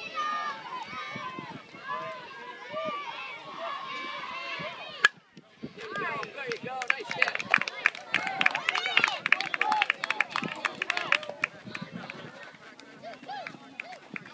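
Spectators talking, then a single sharp crack of a bat hitting the ball about five seconds in. Several seconds of cheering and shouting follow, then fade.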